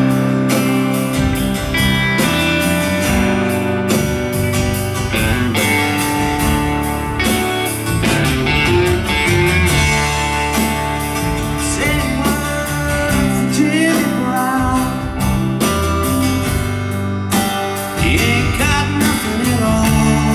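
Live rock band playing: electric and acoustic guitars over drums, heard from the audience in a club.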